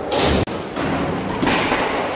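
Skateboard on a metal rail and a hard floor: the board scraping and rolling, with thuds. A loud stretch of noise breaks off abruptly just under half a second in, and another loud knock comes about a second and a half in.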